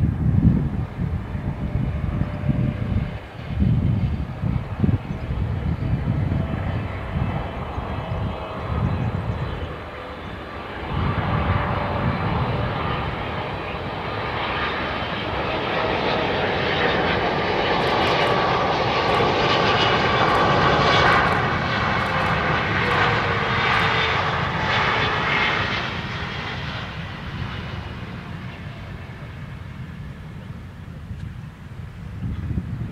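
Twin jet engines of an Air Canada Boeing 777 on final approach. The sound grows louder, with a whine that drops slightly in pitch as the airliner passes, then fades in the last few seconds.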